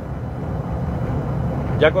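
Steady low road and engine rumble inside the cabin of a vehicle cruising along a highway.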